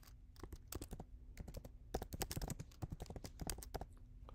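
Faint typing on a computer keyboard: a quick, irregular run of keystrokes as a short phrase is typed.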